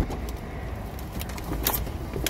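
Car engine idling with a steady low rumble, under a sharp thump at the start and scattered clicks and rustling of handling, with a paper takeout bag being brought up near the microphone.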